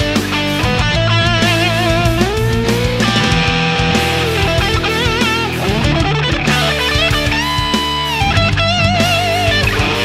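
Epiphone 1958 Korina Flying V electric guitar with Gibson BurstBucker humbuckers, played through an overdriven Marshall amp: a lead line of held notes with wide vibrato and string bends. The drive tone is gritty and dry.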